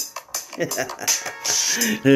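A man laughing in short breathy bursts, without words, with a few faint clicks.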